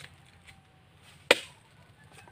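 Wood being chopped with a blade, single strokes at a slow pace: a faint knock at the start and one sharp chopping stroke about a second and a half in.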